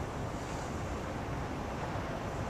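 Steady rushing noise of an ice hockey rink during play, with skaters moving on the ice and spectators in the stands. There are no distinct puck or stick hits.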